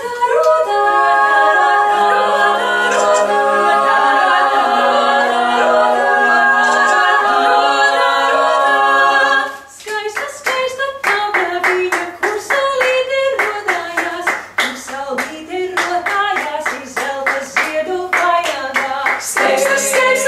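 Female a cappella ensemble of six voices singing a Latvian folk-song arrangement in sustained close harmony. About ten seconds in the held chord breaks off, and the singing goes on in a quicker, rhythmic pattern with the singers clapping their hands.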